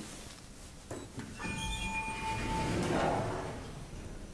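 Schindler 3300 elevator: a click about a second in, then a steady electronic tone held for about a second, then its automatic sliding doors moving with a rushing sound that swells and fades.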